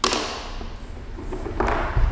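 A thump, then rustling and handling noise as a person shifts his seated position on a floor mat.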